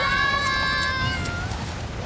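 A cartoon cat character's long meow, rising into a high held note for about a second and a half before fading.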